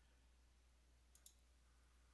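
Near silence with two faint computer-mouse clicks a little over a second in, over a faint low steady hum.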